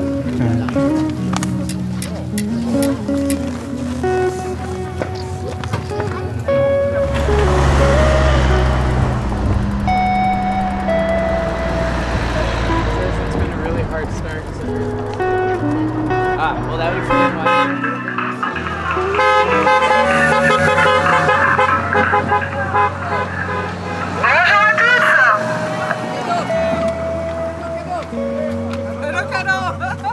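Music blaring from the loudspeakers of passing Tour de France publicity caravan vehicles, with a vehicle rumbling by between about seven and fourteen seconds in and horn toots; near the end, a brief wavering tone that glides up and down.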